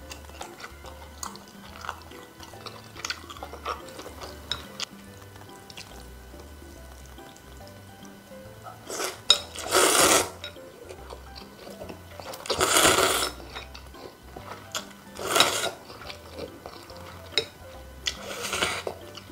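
Thin noodles in cold yeolmu kimchi broth being slurped up in four loud slurps, about nine, twelve, fifteen and eighteen seconds in. Before them there are soft scattered clicks of eating.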